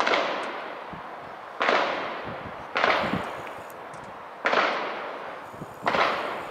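A series of sharp bangs, five in about six seconds at uneven spacing, each followed by a noisy tail that fades away over about a second.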